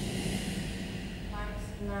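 A low steady hum, then a woman's voice begins speaking about a second and a half in.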